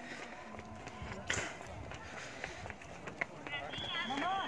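Indistinct voices of people walking past, with scattered small clicks and one short sharp noise about a second in, and a high-pitched voice or call starting near the end.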